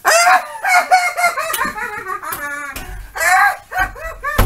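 A person's gloating laugh: a long run of high-pitched laughs, then a short break and one more burst near the end.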